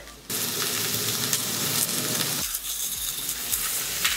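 Smashed baby potatoes and onions sizzling in hot oil in a copper pan, with a wooden spatula stirring them. The sizzle starts abruptly about a third of a second in.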